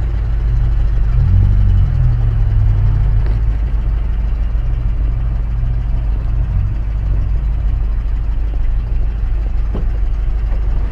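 Car engine running at idle: a steady low rumble that swells briefly about a second in, then settles.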